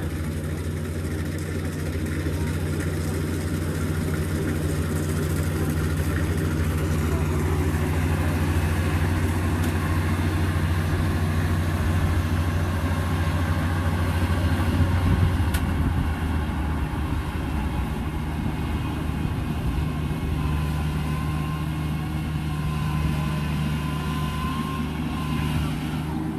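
Kubota DC35 rice combine harvester running steadily while cutting and threshing, a continuous low engine drone. A faint high whine joins in for the last few seconds.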